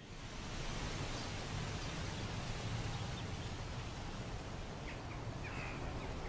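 Steady outdoor wind noise with a soft rustle, as of wind through grass and reeds, with a few faint high chirps near the end.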